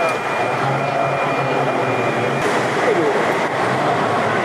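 Busy airport terminal hall: a babble of voices and general hall noise, with a thin steady high tone that stops about two and a half seconds in.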